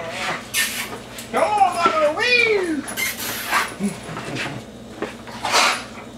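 German Shepherd whining in play: a pitched cry that wavers up and down from about a second and a half in, then slides down in pitch over roughly half a second. A few short rustling noises come before and after it.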